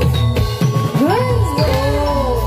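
Javanese gamelan music playing for a jathilan dance, with steady low notes, a gliding melodic line, and a bright jingling of bells over it.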